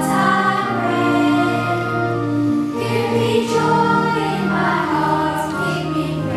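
A children's choir singing together, a song sung in long held notes.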